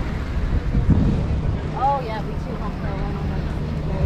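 Steady low outdoor rumble, with a brief voice about two seconds in.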